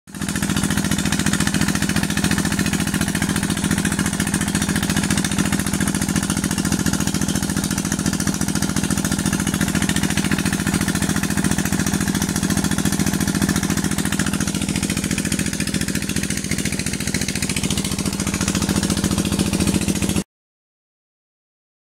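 Irrigation tubewell pump engine running steadily with a rapid, even thudding, over water gushing from the outlet pipe into a concrete basin and channel.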